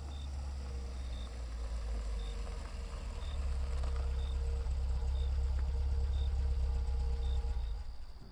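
Car engine idling, getting louder over the first few seconds and then shutting off near the end.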